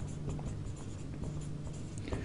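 Marker pen writing on a whiteboard: a run of short, irregular strokes as a word is written out.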